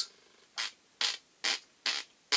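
Four short rasping strokes, evenly spaced about two a second, made by a person in a pause between words, with near quiet between them.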